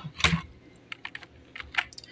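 A string of light, quick clicks, with a softer knock about a quarter-second in and half a dozen sharp clicks through the second half.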